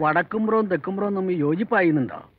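Speech only: one person talking.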